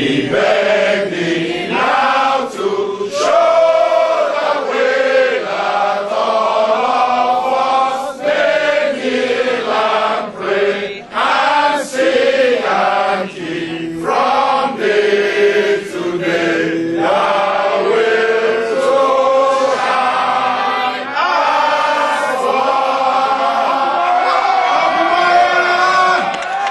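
A mixed group of men and women singing in chorus, the group's traditional opening song, ending on a long held note near the end.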